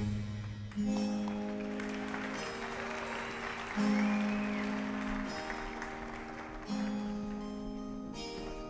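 A quiet instrumental passage of held chords, each sustained for one to two seconds before the next comes in, with audience applause faintly underneath.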